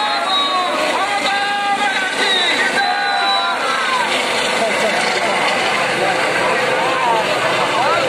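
A crowd of people shouting and calling out over the steady noise of a light helicopter flying low overhead.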